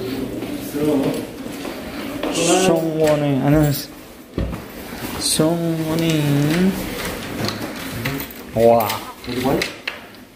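Locker doors knocking and clicking as they are opened and shut, with a couple of short knocks in the middle, amid men's voices talking.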